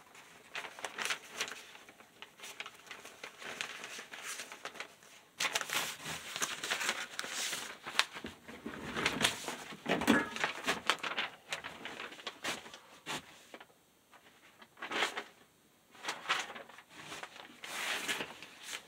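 Rustling and crinkling handling noise with scattered clicks and taps, coming and going in irregular bursts; it is louder from about five seconds in and drops to a brief lull late on.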